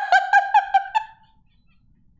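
A woman's high-pitched laugh: a quick run of about six short, pitched notes that fades out about a second in.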